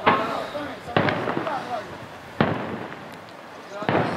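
Daytime fireworks display: four loud aerial shell bursts, roughly a second apart, each followed by a fading echo.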